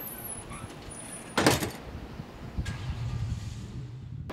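A heavy exterior door banging shut once, loudly, about a second and a half in, over a low steady outdoor rumble.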